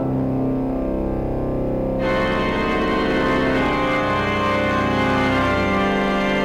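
Church organ playing sustained full chords over held bass notes; about two seconds in, higher, brighter stops come in and the sound fills out.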